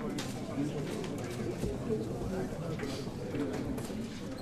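Low murmur of many people talking among themselves in a meeting room, no single voice standing out, with scattered sharp clicks.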